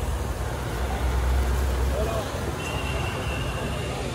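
Busy street-market ambience: a steady low rumble of road traffic under background voices, with a thin high steady tone held for about a second near the end.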